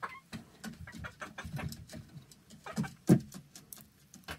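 Chickens pecking and stepping at cat food on a floor: scattered light taps and clicks, with one louder short sound about three seconds in.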